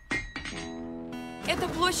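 A short musical jingle: a few bright, chime-like struck notes in quick succession that ring on into a held chord, cut off about one and a half seconds in.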